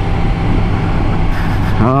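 Yamaha MT-10's inline-four engine running at a steady cruising speed with no revving, under a steady rush of wind and road noise.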